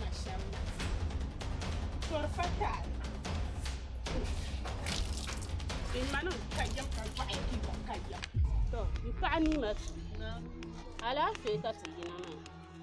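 Voices speaking in a drama over background music and a steady low hum, with a sudden thump about eight seconds in.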